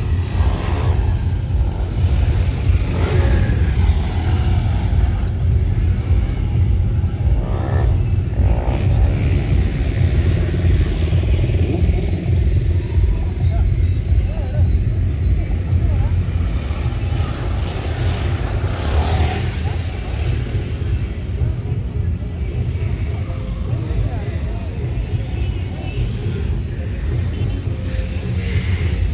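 Hero Xpulse 200 4V single-cylinder dirt bikes running on an off-road obstacle track, over a steady low rumble, with voices and music in the background.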